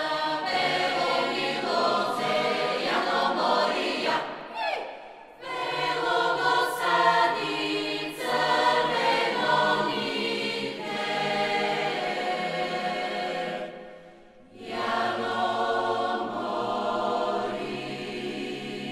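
Mixed choir singing a folk-jazz piece in several parts, in long phrases broken by two short pauses, about four seconds in and about fourteen seconds in.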